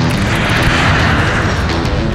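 Jet airliner flying low overhead, its engine noise swelling to a peak about a second in and then easing, under background music.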